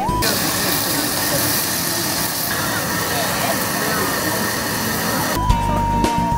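Restaurant room sound: a steady loud hiss with indistinct voices in the background. Background music cuts out just after the start and comes back near the end.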